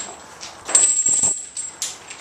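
Steel chains hung from the ends of an axle bar jangling and rattling as the bar is pressed overhead, starting about two thirds of a second in, with a sharp clink near the end.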